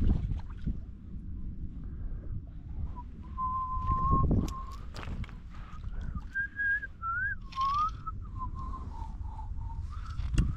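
A person whistling a slow, wandering tune of held notes and little glides, starting about three seconds in. Low wind rumble on the microphone sits under it, with a few short knocks of handling.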